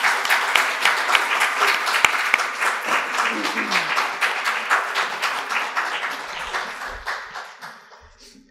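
Audience applauding, a dense patter of many hands clapping that fades away over the last few seconds.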